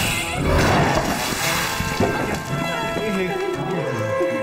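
Dramatic background music with a rushing burst of noise in the first second or so, followed by a character's wordless vocal sounds.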